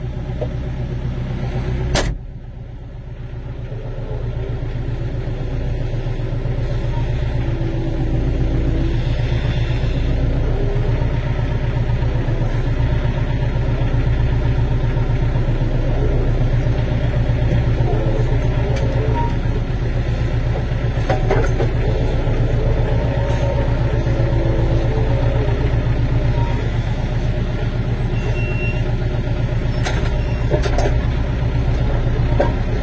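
Tractor engine running steadily at close range while its front loader works. There is a sharp click about two seconds in, after which the engine sound builds over several seconds and then holds.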